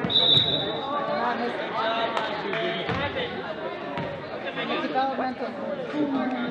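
Echoing gym ambience of a basketball game: overlapping voices of players and spectators, a short high whistle blast right at the start, and a couple of basketball bounces on the hardwood court.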